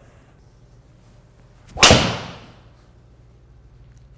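Tour Edge EXS 220 driver striking a golf ball: one sharp, loud impact about two seconds in, ringing off briefly. The strike is well hit.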